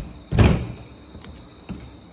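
A single heavy thud about half a second in as the long digital torque wrench is handled on the plastic folding table, followed by a faint click near the end.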